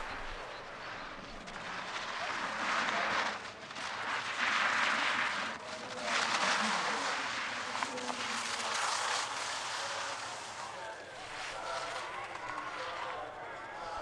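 A sit-ski's edges carving and scraping over hard snow through giant slalom turns: a hiss that swells and fades several times, roughly once every two seconds.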